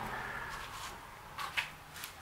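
Low room tone with two short handling scuffs about one and a half seconds in, as the paddle-holder mount is picked up and handled.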